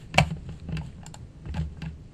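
A few separate computer keyboard keystrokes, clicking at uneven intervals, the first one loudest.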